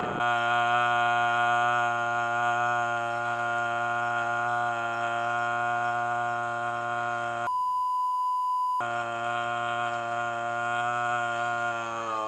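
A man's voice holding one long note at a single pitch. About seven and a half seconds in, it is cut for just over a second by a high, pure censor bleep. Near the end, the note slides down in pitch.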